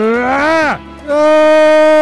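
A person's loud scream: a short rising yell, then a long scream held at one steady pitch.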